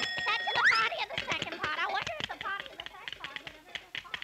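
Cartoon typewriter clattering fast, with a bell ding right at the start and a quick rising zip just after it, like the carriage being thrown back. Rapid clicks and voice-like chatter run on behind it.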